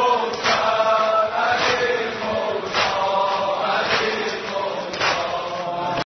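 Chanted devotional praise of Imam Ali (a madh), voices drawing out long, wavering melodic notes without clear words.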